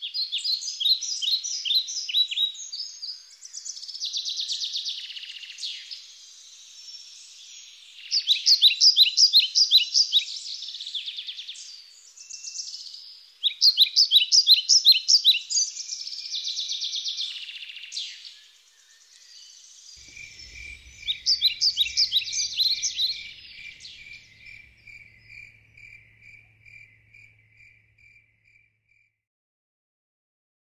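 Outdoor field ambience of high-pitched chirping trills in repeated bursts of a few seconds. In the second half a row of evenly spaced, lower chirps takes over and fades away.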